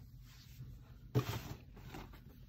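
A single short thump with a brief rustling tail about a second in, from cardboard boxes being lifted and set down.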